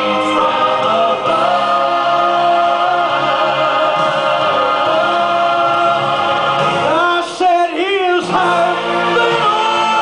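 Church choir and a male soloist singing a gospel song together. About seven seconds in, a single voice holds a note with heavy vibrato.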